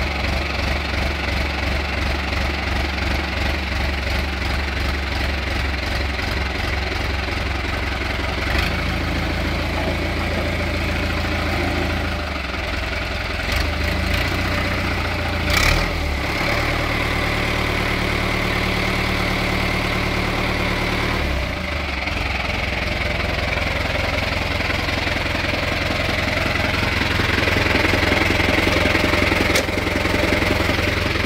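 Fiat 65-90 tractor's diesel engine running, mostly at idle, its note shifting a few times. A sharp knock comes about halfway through, and the engine runs a little louder near the end.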